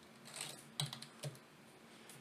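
Faint computer keyboard typing: a few keystrokes in the first second or so as a short terminal command is typed and entered.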